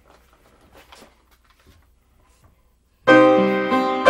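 Faint paper handling, then about three seconds in an upright piano starts the accompaniment to a school song with a struck chord that rings and fades.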